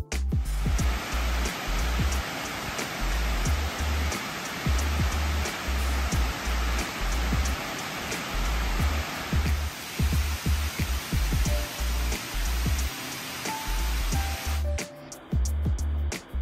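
Water rushing over a dam spillway in a steady, even rush, under background music with a steady beat. The water sound stops about a second before the end, leaving only the music.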